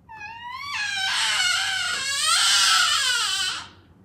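A young girl crying loudly: one long, high-pitched wail that turns harsher after the first moment and breaks off shortly before the end.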